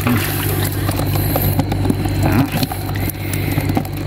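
An engine running steadily with a low, even drone, with scattered light clicks and knocks over it.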